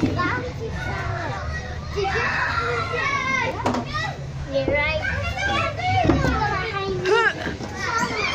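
Many children shouting and squealing at play, their high voices overlapping. There are a couple of sharp knocks a few seconds in.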